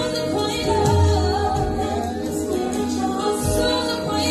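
Gospel music with a choir singing over steady accompaniment.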